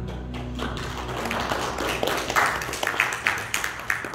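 Soft instrumental music fading out in the first second, then rustling and a run of irregular taps and thumps that grow louder in the second half, like people getting up and stepping on a wooden floor.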